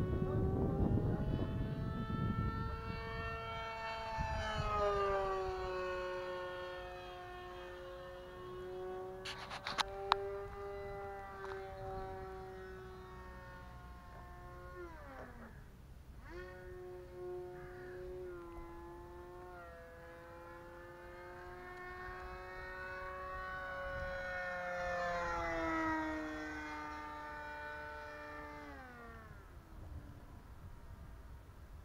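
Electric motor and propeller of an E-flite Scimitar RC model plane whining in flight, its pitch sliding up and down with throttle and dropping steeply as it passes by, about halfway through and again near the end. Low wind rumble at the start and a couple of sharp clicks about a third of the way in.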